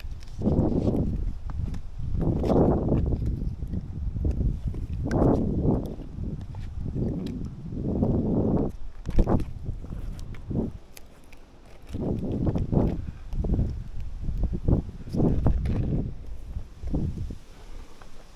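A tree climber's close, irregular rushing sounds of effort: clothing and hands rubbing and scraping on rough maple bark, with hard breathing, in bursts every one to three seconds and a few sharp clicks among them.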